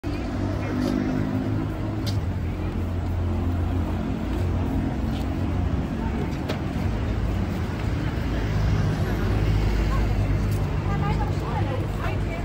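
Road traffic, with a heavy vehicle's engine such as a bus running steadily under the scattered voices of a crowd on the pavement.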